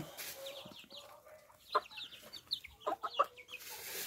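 A flock of young criollo chickens, about two months old, calling softly as they peck at feed: many short, high falling peeps and clucks, with a few louder calls a little under two seconds in and around three seconds in.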